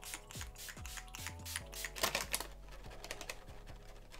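Urban Decay All Nighter setting spray pumped at the face in a series of short, quick spritzes, over quiet background music.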